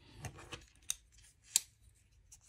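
Light taps and two sharp clicks of a small titanium-handled folding knife, a Chris Reeve Sebenza 21 small, being picked up off a cutting mat and handled.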